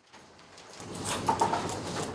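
Barber's scissors snipping hair in a quick run of short clicks, over the background noise of the shop, which comes in about half a second in.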